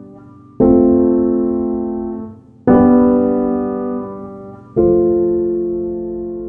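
Slow background piano music: sustained chords struck about every two seconds, each ringing and fading before the next.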